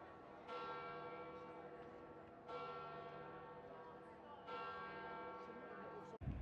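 A church bell tolling faintly, three strokes about two seconds apart, each ringing on into the next.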